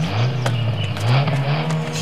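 Car engine accelerating as the car pulls away, its pitch rising twice and then holding steady.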